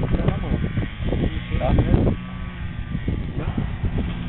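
Indistinct speech of people talking, over a steady low rumble.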